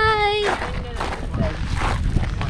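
A child's voice holding one long sung note that falls slightly in pitch and stops about half a second in. After it, wind rumbles on the microphone.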